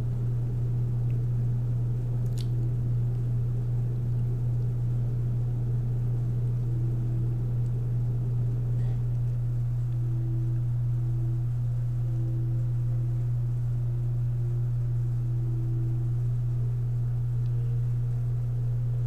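A steady low hum at an even level, with a faint click about two and a half seconds in.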